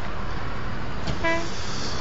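A short, single car horn toot about a second in, heard over steady roadside traffic noise.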